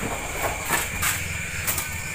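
A steady low hum and hiss, with a few faint knocks as durians are handled and stacked by hand.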